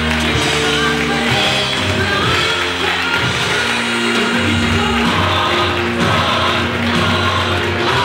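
Music with singing voices, in long held notes.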